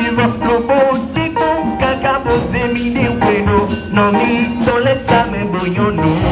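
Church choir singing a lively melody in several voices, with percussion keeping a steady beat.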